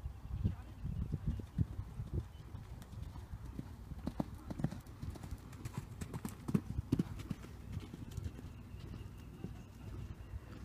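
Horse cantering on sand arena footing: a rhythm of dull hoofbeats, loudest about halfway through as the horse passes close.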